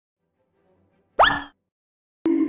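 A single short intro sound effect about a second in: a quick upward pitch sweep with a held tone, over within a third of a second.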